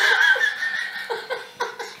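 Women laughing hard: a high held squeal of laughter, then a run of short laugh pulses, about four a second.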